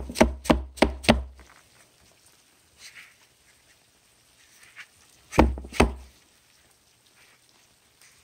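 Quick sharp knocks of cardboard egg crate flats against a clear plastic tub: four in the first second or so, then two more about five and a half seconds in.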